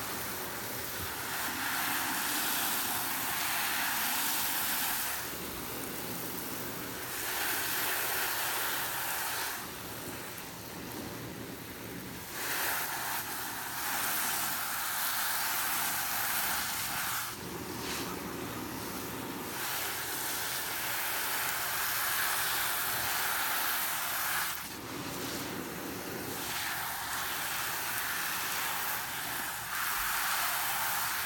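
Tap water running into a sink full of suds and over a soapy sponge held under the stream. It is a steady hiss that shifts every few seconds between a brighter, higher sound and a lower, duller splash as the sponge is squeezed and moved in and out of the flow.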